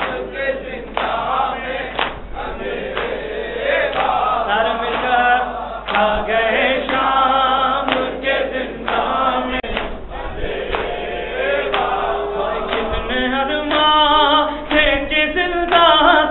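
A male reciter sings a noha (Shia lament) through a microphone, with a group of men singing along. Short slaps come roughly once a second, the sound of hands striking chests in matam.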